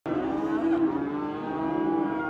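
A cow mooing: one long, steady moo.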